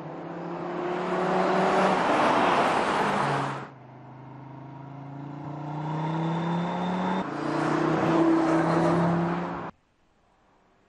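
Audi RS3's turbocharged 2.5-litre five-cylinder engine accelerating, rising in pitch and loudness. It comes in two edited takes: the first cuts off suddenly a little under four seconds in, and the second builds again and cuts off suddenly just before the end.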